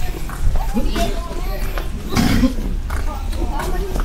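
Background chatter of several people talking, with footsteps clicking on stone paving and one louder burst of sound about two seconds in.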